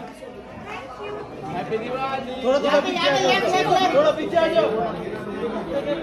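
Indistinct chatter of several people talking at once, louder from about halfway through.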